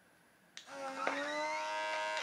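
Small electric suction pump of a handheld lip-plumping device running, a steady whine that starts about half a second in as it draws suction on the lips.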